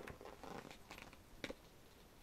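Pages of a large photobook being turned by hand: faint paper rustling, with a sharp page snap about one and a half seconds in.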